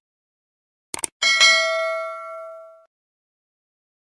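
Subscribe-button animation sound effects: a quick double mouse click about a second in, then a bell ding that rings out and fades over about a second and a half as the notification bell is switched on.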